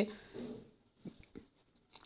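A woman's voice trailing off, then near silence with a faint low sound and two or three faint clicks around the middle.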